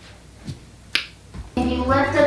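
A single sharp click about a second in, then near the end music with a steady low beat and a voice comes in loudly.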